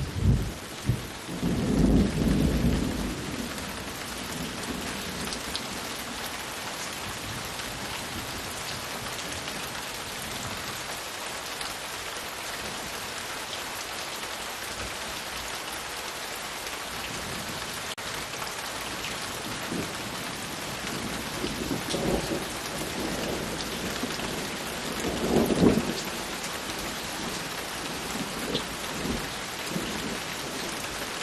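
Steady rain falling, with thunder rumbling: several claps in the first three seconds and two more rumbles in the last third.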